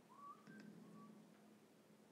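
Near silence: room tone with a faint low hum, and two faint short whistle-like tones, the first rising, the second about a second in.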